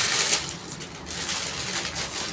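Plastic packaging crinkling and rustling as a courier bag is pulled open and a garment in a clear plastic bag is drawn out, loudest in the first half second, then in lighter uneven bursts.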